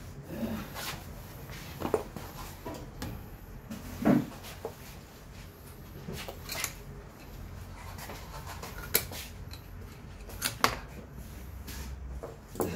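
Scattered small clicks, taps and rubbing of metal brake parts being handled at a Yamaha XMAX300 scooter's rear disc brake caliper during a pad change. The loudest is a knock about four seconds in, with sharp clicks around two, nine and ten and a half seconds in.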